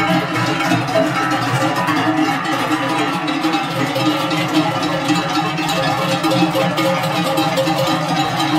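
Many cowbells clanging together without a break as a herd of cows walks past, the bells swinging on their necks with each step.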